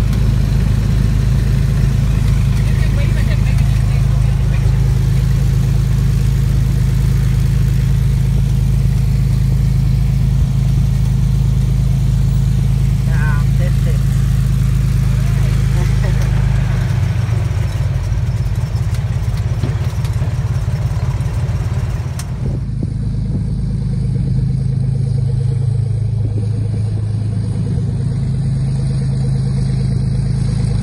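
Single-engine propeller plane's piston engine running with a steady low drone, heard from inside the cabin as it moves on the runway. About three-quarters of the way through, the sound cuts to the plane's engine heard from outside on the runway.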